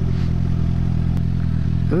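Suzuki GSX-R sportbike engine running at a steady pitch while riding, with wind noise over the microphone.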